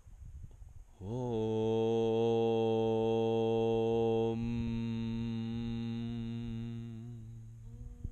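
A man's voice chanting one long, steady 'Om'. It slides up into pitch about a second in, the open vowel closes about halfway through, and it fades into a humming 'mmm' near the end.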